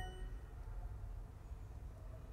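Duolingo's correct-answer chime ringing out and fading within the first half second, then only a low steady background hum.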